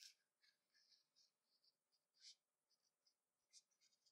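Faint scratchy rubbing of 550 nylon paracord sliding through the fingers and through its own loops as it is hand-knitted, in short strokes, the clearest right at the start, a bit past two seconds in and about three and a half seconds in.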